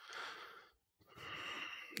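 A person breathing faintly: a short breath at the start, then a longer one about a second later, just before speech begins.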